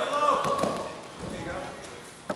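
Shouted voices in the first half second, then a few dull thuds of wrestlers' feet on the mat as they tie up.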